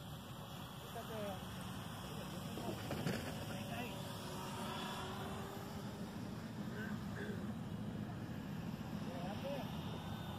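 Steady hum of the small battery-powered motor and propeller of a radio-controlled slow-flyer model plane in flight, over a wash of background noise.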